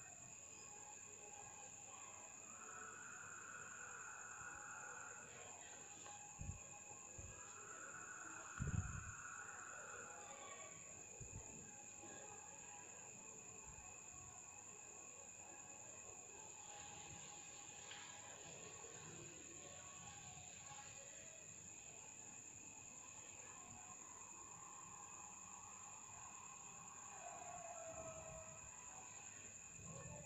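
Near silence: faint room tone with a steady high-pitched whine, and two soft thumps, the louder one about nine seconds in.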